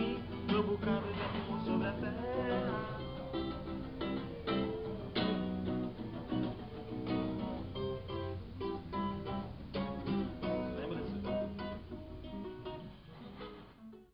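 Acoustic guitar (violão) plucked in a steady flow of single notes and chords, fading out near the end.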